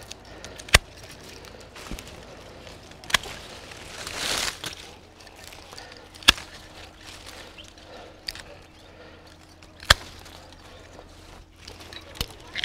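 Hand pruning shears snipping through grapevine canes: four sharp cuts a few seconds apart, with a couple of lighter clicks between and a brief rustle about four seconds in.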